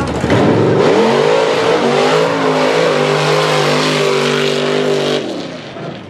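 Pickup truck's engine revving up hard as it launches on a mud drag run, held at steady high revs for about three seconds, then cut off suddenly about five seconds in as the throttle is released.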